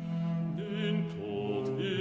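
Baroque ensemble music on period instruments: held chords from strings and continuo with a low held line, from a movement for bass voice, trumpet, strings and continuo.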